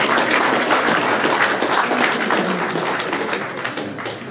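Audience applauding: dense clapping from many hands that starts to die down near the end.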